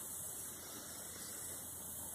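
Faint steady background hiss with no distinct sound event: open-air room tone on a phone microphone.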